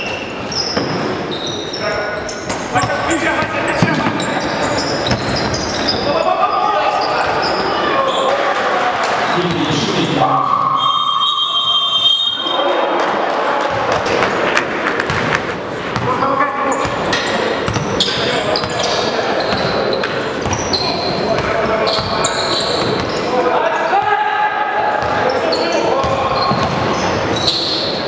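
Basketball dribbled on a gym floor with voices carrying through the hall. About ten seconds in, a steady electronic buzzer sounds for about two seconds as the game clock runs out at the end of the period.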